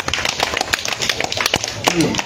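Scattered hand claps from a small audience, several irregular claps a second, during a pause in the speech.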